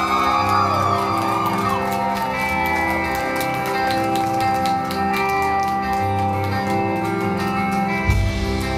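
Live folk-rock band playing an instrumental passage: acoustic guitars strummed together over drums, amplified through the club's sound system.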